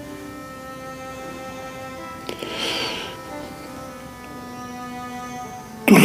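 Soft background score of sustained, held tones, with a short breathy hiss about two and a half seconds in.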